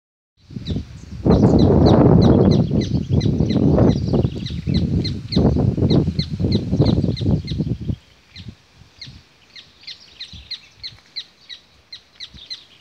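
A bird chirping over and over in a steady rhythm, about three short high chirps a second. For most of the first eight seconds a loud low rumbling noise runs under it, then drops away.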